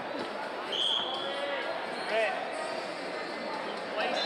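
Echoing wrestling-arena background: scattered shouts and voices from around the hall, with dull thuds on the mats. About a second in, a short, steady, high whistle sounds.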